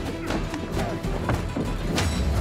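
Dramatic film-soundtrack music with a few sharp metallic hits of swords clashing in a fight scene.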